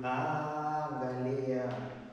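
A man singing a slow worship song in Swahili, holding long notes; the sung phrase trails off near the end.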